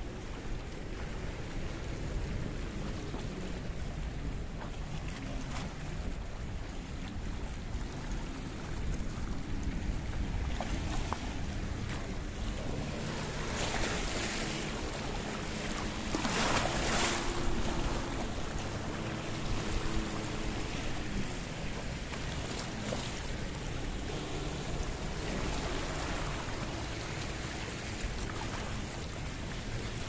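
Small sea waves lapping and washing over a rocky shoreline, with wind buffeting the microphone. Two louder washes of water come about halfway through.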